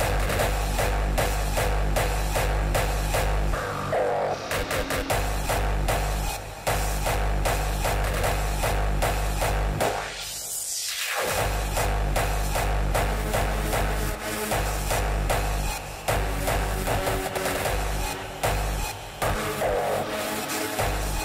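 Hardstyle dance music with a loud, steady pounding kick drum. About halfway through, the kick drops out for about a second under a rushing sweep, then comes back in.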